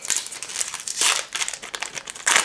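Foil trading-card booster-pack wrapper crinkling and tearing as it is ripped open by hand, with a louder rip about a second in.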